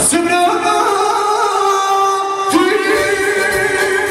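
A man singing live into a microphone through a PA, holding long notes with vibrato over electronic keyboard accompaniment, with a new sung phrase starting about two and a half seconds in.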